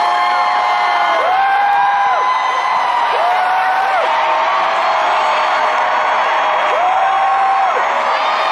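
Large stadium crowd cheering and whooping, many voices holding long shouts that rise and fall and overlap over a continuous roar.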